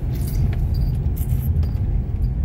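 Steady low road and engine rumble heard inside a moving car's cabin, with a few brief light clicks or rattles.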